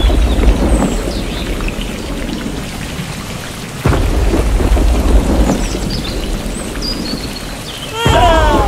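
Heavy rain falling with deep rumbling thunder. The downpour sound drops back, then comes in loud again suddenly about four seconds in.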